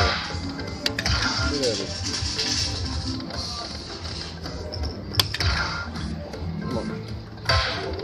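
Poker machine game music and sound effects during a hold-and-spin feature: a continuous electronic soundtrack while the reels respin, with a few sharp clicks and chimes as reels stop and pearl symbols land, the last of them near the end.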